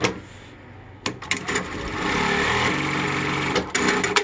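JUKI DDL-9000C industrial lockstitch sewing machine starting after a sharp click and sewing steadily for about three seconds. Its pitch drops partway through as the multi-layer sensor slows it for the thicker folded fabric. A few sharp clicks come near the end as it stops.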